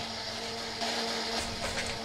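A small electric motor running with a steady whirring hum and a constant low tone, with a few faint clicks.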